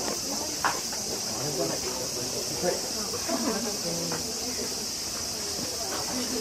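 Steady, high-pitched droning chorus of summer cicadas in the trees, unbroken throughout, with faint chatter of people in the background.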